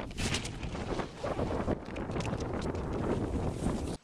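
Wind buffeting a camera microphone outdoors, an uneven rumbling rush with scattered crackles, as the camera moves fast over snow.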